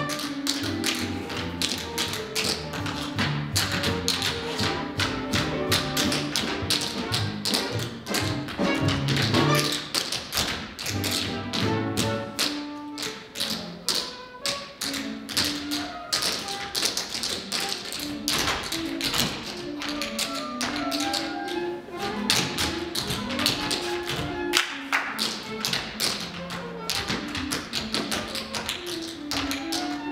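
Tap-dance duet: two dancers' tap shoes striking the stage floor in quick, rhythmic runs of taps, over instrumental accompaniment.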